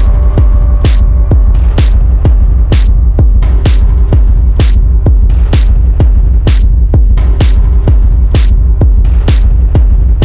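Dark minimal techno track. A steady, heavy bass throb runs under a bright hit about once a second, with faster ticking percussion between the hits and a short mid-pitched note coming back every few seconds.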